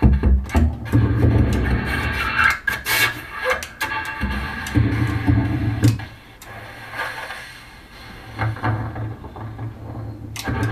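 Bassoon played in free improvisation with extended techniques: stretches of low sustained notes broken up by short noisy clicks and rasping sounds, dropping quieter for a couple of seconds after the middle.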